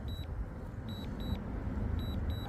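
Warning alarm from a DJI drone controller: short high double beeps repeating about once a second, over a low rumble. It is the alert for strong winds, with the aircraft unable to return home automatically.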